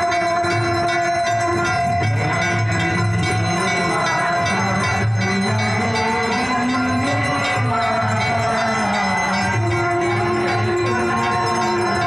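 Devotional aarti music with bells ringing continuously over a steady low beat and a moving melody.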